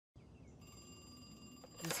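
A rotary wall telephone's bell ringing once, faint and steady for about a second, over a low hiss; a man's voice begins just as it stops.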